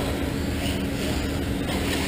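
Electric RC trucks (Traxxas Slash) running on a dirt track: a steady, even mix of motor and tyre noise, with a constant low hum underneath.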